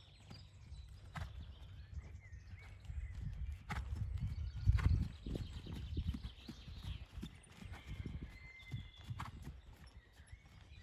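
Horse trotting on a soft sand arena surface, its hoofbeats falling in a steady muffled rhythm that is loudest about halfway through as the horse passes close.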